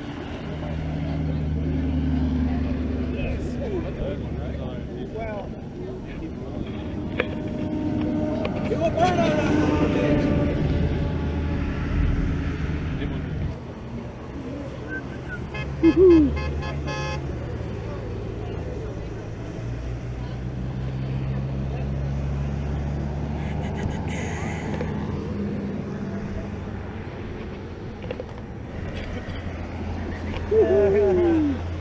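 Cars and trucks driving past on a highway, their engine and tyre noise swelling and fading as each one goes by, with a short loud burst about halfway through.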